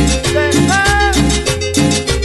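Instrumental cumbia on a steady dance beat: a bouncing bass line with notes changing about every half second, and a short melodic lead phrase gliding up in pitch about half a second in.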